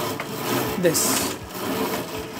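Pleated fabric blind being raised, its lift mechanism making a steady mechanical noise as the blind folds up.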